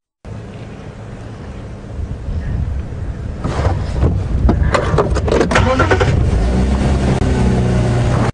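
Open safari vehicle's engine running as it drives through the bush, growing louder about two seconds in, with a cluster of knocks and rattles between about three and a half and six seconds.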